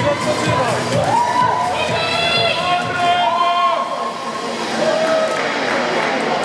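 Audience cheering for the contestants, with several long drawn-out shouts in the middle, over background music.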